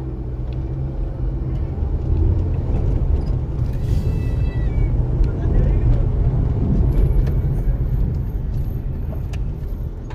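Low, steady rumble of a car's engine and tyres heard from inside the cabin as it drives slowly along a street, growing a little louder in the middle. About four seconds in there is a brief high pitched sound.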